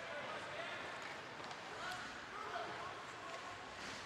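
Hockey rink ambience during play: a steady background hiss with faint, distant voices calling out.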